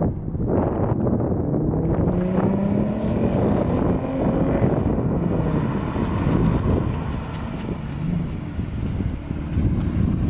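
Lexus IS350's 3.5-litre V6 through an aftermarket Apexi mid-pipe and axle-back exhaust, accelerating under load with the note rising in pitch about two seconds in, then easing off as the car drives up and past. Wind buffets the microphone throughout.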